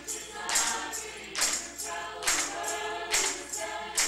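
Chamber choir singing, with hand claps and a tambourine striking together on a steady beat just over once a second.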